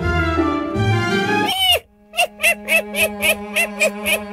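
Cartoon background music that cuts off near the middle, followed by a cartoon monkey's voice in short repeated vocal sounds, about three a second, each bending up and down in pitch, over a steady low tone.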